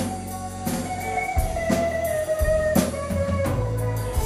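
A live band plays an instrumental passage. An electric guitar holds long lead notes that bend slightly in pitch, over bass guitar and a drum kit with regular hits.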